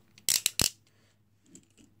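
A quick run of sharp clicks, small hard objects knocking together, starting about a quarter second in and over within half a second.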